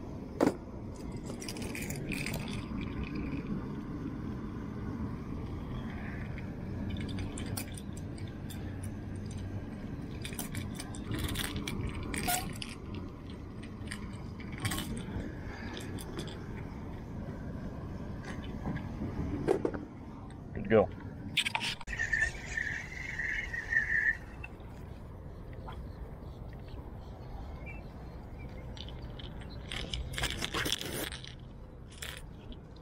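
Fishing lures and their metal treble hooks and split rings clinking and clicking as they are handled and swapped, with several sharp clicks, over a steady low background rumble. A brief high-pitched trill comes about three quarters of the way through.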